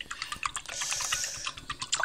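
A pencil stirring liquid in a glass measuring cup, clicking and tapping irregularly against the glass.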